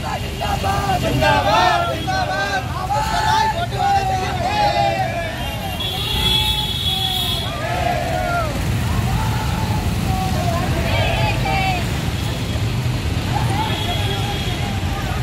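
Protest marchers shouting and chanting slogans, several voices at once, over a steady low rumble of street traffic. The voices are thickest in the first half and thin out later, and a brief high steady tone sounds about six seconds in.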